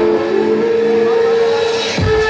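Electronic dance music in a breakdown: held synth tones with the kick drum dropped out, and a noise sweep rising toward the end.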